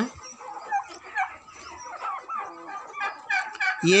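Domestic turkey flock calling: many short, scattered yelps and peeps that rise and fall in pitch, overlapping one another.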